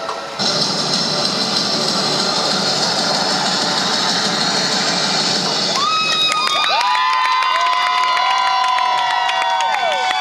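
Spectators cheering as a synchronized swimming routine ends. From about six seconds in, many shrill whistles and clapping join the cheers.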